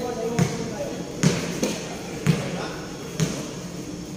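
A basketball bounced on a painted concrete court: four bounces about a second apart.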